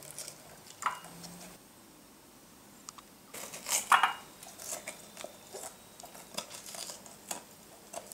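A small kitchen knife cutting and prying the tops and seeds out of raw red peppers: scattered soft crunches and clicks, with pepper pieces dropped into a glass bowl, the loudest knock about four seconds in.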